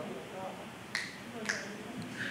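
Faint voices away from the microphones in a large meeting chamber, with two short sharp clicks about half a second apart.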